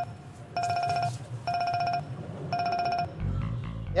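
Mobile phone ringing: a trilling electronic ringtone in short bursts about once a second, three rings, stopping about three seconds in.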